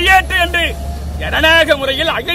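A man speaking Tamil in a raised voice, addressing reporters' microphones at close range. Under the voice there is a low steady rumble that stops a little past halfway.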